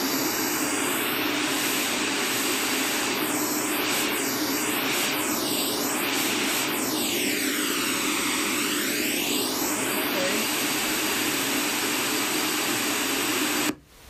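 Pink noise from two small Samsung full-range speakers playing the same signal, with a hollow, swishing comb-filter colouring as one speaker is slid back and forth. The gap between the speakers changes, so the cancelled bands sweep down and back up in pitch, several times quickly and then once slowly. The noise cuts off abruptly near the end.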